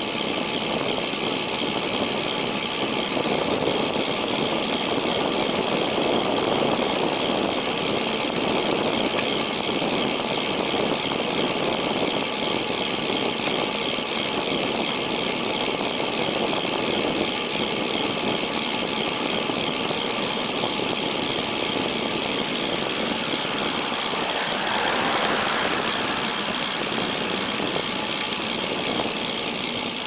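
Bicycle rolling along an asphalt path: steady tyre and wind noise with a continuous high buzz, typical of the rear hub's freewheel ratchet clicking rapidly. A passing vehicle swells briefly near the end.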